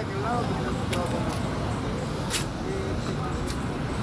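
Street traffic: a steady low rumble of cars and engines, with faint distant voices and three sharp clicks spread through it.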